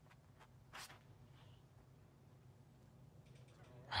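Near silence with a faint low outdoor hum, broken under a second in by one brief, soft noise as a disc golfer throws his drive from the tee pad.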